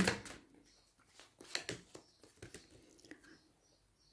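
Oracle cards being shuffled and handled: a few soft, scattered clicks and rustles of card stock, fading out after about three seconds.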